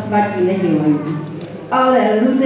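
A woman's voice through a microphone in long, sliding tones, with a short break about a second and a half in, before it resumes.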